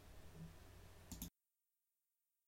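Near silence: faint room tone with one short click just over a second in, after which the sound cuts to dead silence.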